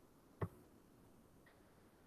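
Near silence broken by a single short, faint click about half a second in.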